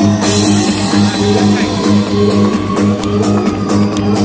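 Loud techno from a DJ set over a large sound system, with a steady repeating bass beat. A vocal sample 'let's do it' ends just as it begins, and regular hi-hat ticks come in about three seconds in.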